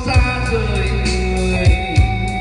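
A live band playing a song, with electric guitar, bass and drums, and a sung melody line over it.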